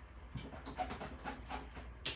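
Clear stamps being rubbed on a chamois to clean off the ink: faint, rhythmic scrubbing strokes, about three or four a second.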